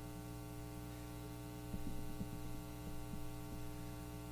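Steady electrical mains hum with a buzzy stack of overtones, as picked up through a sound system or recording chain. Faint soft knocks and rustles come in from a little under two seconds in.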